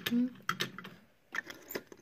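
A few small, sharp clicks and taps of a diecast toy car being picked up and handled against other toy cars, after a brief voice sound at the start.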